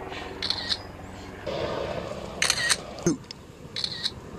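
An iPhone's camera shutter sound, several short clicks.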